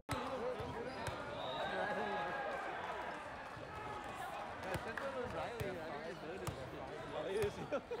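Sports-hall ambience: several voices talking and a volleyball thudding at irregular moments as it is hit or bounced on the court floor. A short laugh comes right at the end.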